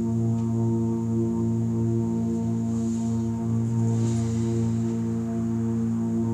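A steady droning tone with a stack of even overtones, a chakra balancing frequency pitched for the root chakra, holding at an even level throughout.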